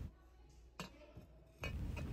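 Near silence, broken by one faint click about a third of the way in; the shop's background noise comes back suddenly near the end.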